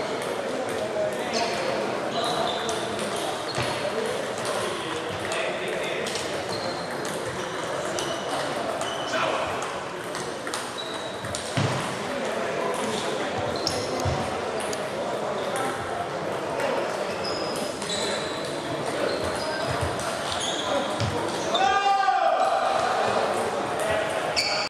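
Table tennis ball clicking off rackets and the table in short rallies, echoing in a large hall over background voices. About two seconds before the end, a ball bounces on the floor in quickening taps as it comes to rest.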